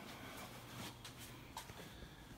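Quiet room tone in a small room: a faint low hum with a few soft ticks.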